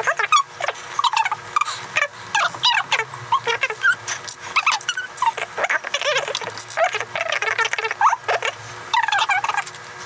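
Sped-up voices of two people talking while building LEGO, turned by the time-lapse into fast, high-pitched, chipmunk-like chattering that never forms words.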